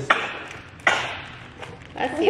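Two sharp knocks of wooden toy blocks on a wooden tabletop, about three-quarters of a second apart, each ringing briefly.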